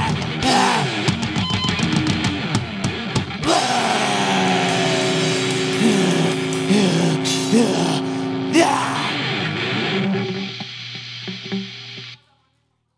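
Live heavy rock band of drums, electric guitars and bass. Quick drum hits run through the first few seconds, then held guitar chords and bending notes ring on. The sound fades away near the end.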